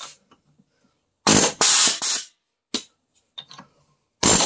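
Pneumatic air chisel (air hammer) with a flat bit hammering under the lip of a seized brake caliper piston: three quick bursts in a row a little over a second in, then a brief one near three seconds. It keeps cutting out, stopping and starting rather than running continuously.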